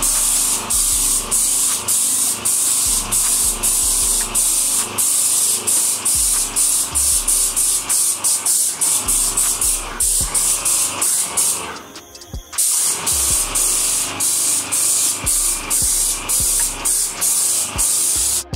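Electric paint spray gun running, a loud steady hiss of paint spray that pulses a few times a second. It cuts out briefly about twelve seconds in, then starts again.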